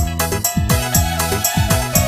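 Instrumental karaoke backing played live on a Technics KN7000 arranger keyboard in a dangdut patam style: a steady beat with low drum hits that drop in pitch, over held keyboard chords, with no vocal.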